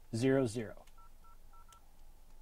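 Four short phone keypad tones in quick succession, each the two-note dial tone of the 0 key, as the Bluetooth pairing passcode 0000 is keyed in on a phone.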